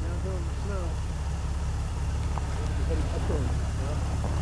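A vehicle engine running steadily with a low rumble, with faint voices over it.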